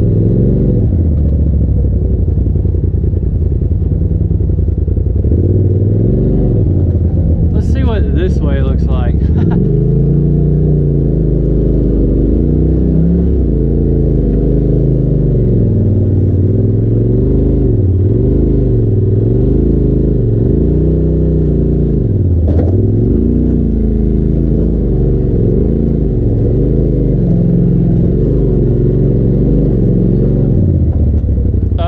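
Side-by-side UTV engine at low revs, its pitch rising and falling as the machine crawls over rocks. A brief high squeak comes about eight seconds in, and a single sharp knock about three-quarters of the way through.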